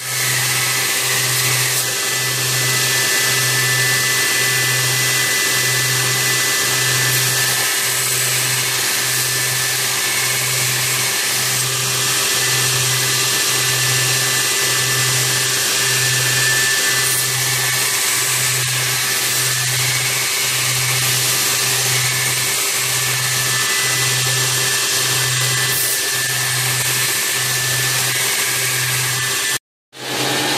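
Belt grinder running steadily while a high-speed-steel knife blank made from a machine hacksaw blade is ground against the belt, shaping its bevel. A low hum pulses about once a second under the grinding.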